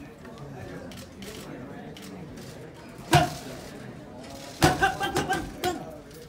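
Boxing gloves cracking on focus mitts: one sharp pop about three seconds in, then a quick flurry of about six hits a second and a half later. A low murmur of voices runs underneath.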